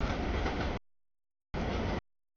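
Mixed freight train cars (tank cars, covered hoppers and boxcars) rolling through a grade crossing, their wheels running on the rails. The sound is chopped: it cuts out completely just under a second in and comes back abruptly about half a second later.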